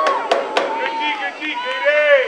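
Several voices shouting at once, high and arching, with two sharp clacks just after the start.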